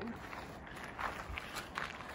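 Faint footsteps on gravel and grass, a few soft scattered steps.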